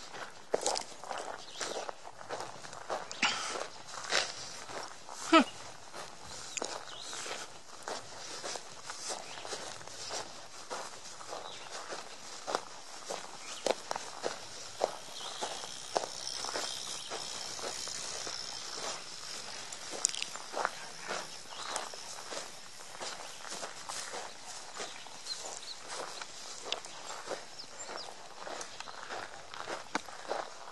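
Footsteps of a person walking at a steady pace on a dirt trail, a couple of crunching steps a second, over a faint outdoor background.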